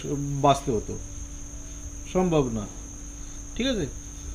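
A man lecturing in short phrases with pauses between them, over a steady high-pitched whine in the background.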